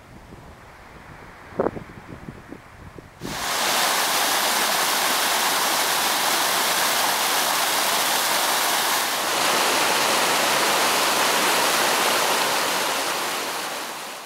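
Snowmelt mountain stream rushing down a rocky cascade, a loud steady rush of water that cuts in suddenly about three seconds in, after a few quiet seconds with a single knock.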